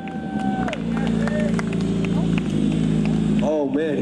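Sport bike engine holding a high, steady pitch that drops a little under a second in as the rider brakes hard into a stoppie. It then runs at a steady lower pitch with a low rumble while the bike rolls on its front wheel.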